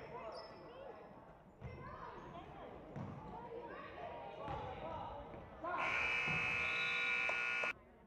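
Gym scoreboard buzzer sounding one steady blast of about two seconds near the end, starting and cutting off abruptly. Before it, a basketball bounces and sneakers squeak on the hardwood court over crowd chatter.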